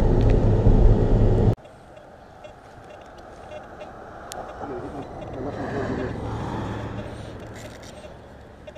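Steady low rumble of road and engine noise inside a Toyota SUV's cabin while driving. It cuts off abruptly about one and a half seconds in, and a much quieter outdoor background follows.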